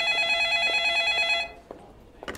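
Office telephone ringing with a rapidly trilling tone, one ring that stops about one and a half seconds in. A faint click follows near the end.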